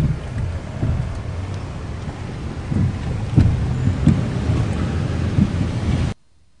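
Road and traffic noise heard from inside a moving taxi: a steady low rumble with a few low thumps in the second half.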